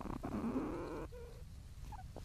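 Sounds of young platypuses inside their nesting burrow, picked up by a microphone in the chamber: a few rapid clicks running into a rasping noise about a second long, then a brief low tone.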